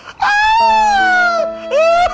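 Comedy soundtrack: a long wailing note that slides slowly downward, over held synthesizer-like chord tones, with a second short rising-and-falling wail near the end.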